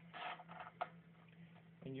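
Light metallic clicking of a 5/16 socket tool working the blower-shroud bolts on a Predator 212 engine, with one sharp click a little under a second in.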